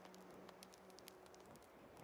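Near silence with faint, scattered crackles of a burning wooden torch, and a low held tone fading out about three quarters of the way through.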